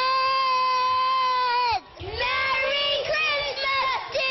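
A child's high voice singing: one long held note for nearly two seconds that drops off at the end, a short break, then more held and sliding notes.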